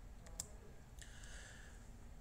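A faint computer mouse click about half a second in, advancing a presentation slide, against low background hiss.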